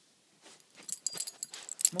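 Handling noise: rustling with a quick run of sharp, light clicks, growing louder toward the end, as the filming phone and clothing are jostled while the baby climbs onto the adult's leg.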